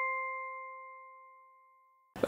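The last chime of an intro jingle ringing out, one held bell-like tone fading away to silence over about a second and a half.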